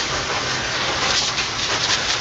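Garden hose spray nozzle spraying a steady hiss of water onto a pleated pool cartridge filter, rinsing the dirt out of it.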